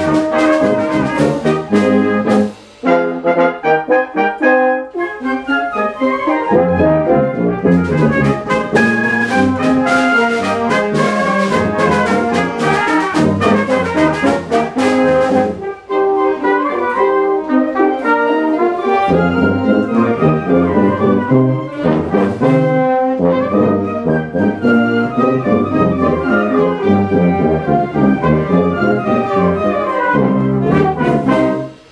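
School wind ensemble playing together, with the brass to the fore. The music breaks off briefly about three seconds in and again about halfway through, then goes on.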